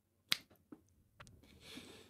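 A single sharp finger snap, followed by a couple of fainter clicks and a soft hiss near the end.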